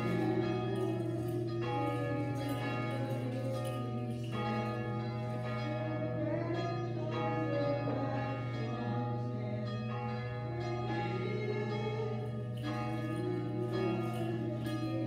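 Church bells ringing: new strikes come every second or so and ring on over one another. A steady low hum runs underneath.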